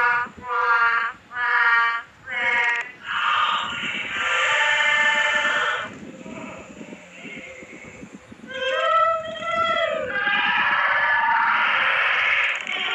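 High-pitched wailing cries: short ones repeating about every 0.7 s for the first three seconds, then longer held cries, with a quieter stretch in the middle and a cry that rises and falls in pitch after it.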